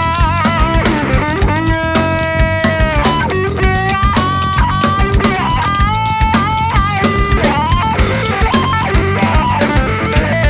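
Live rock band instrumental break: a lead guitar plays a solo of held, bent notes with vibrato, over a steady drum kit groove.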